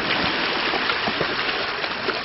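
Shallow seawater washing and trickling over a stony shoreline, a steady rushing noise.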